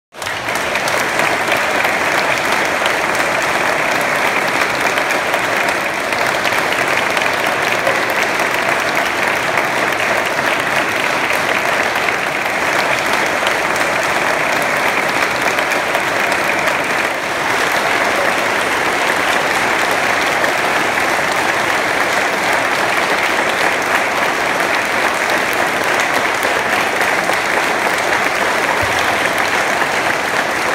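Long, steady applause from an audience, many hands clapping at once.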